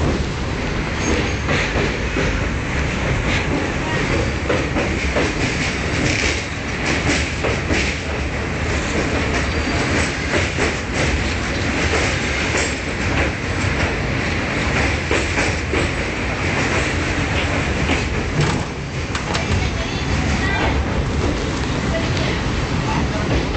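Passenger train running over the Pamban railway bridge, heard from an open carriage window: a loud, steady rumble of wheels on the rails with scattered irregular clicks.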